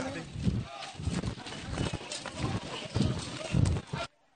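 Footsteps crunching and knocking over rubble and broken concrete, about a step every half second, with voices in the background. The sound cuts off suddenly at the end.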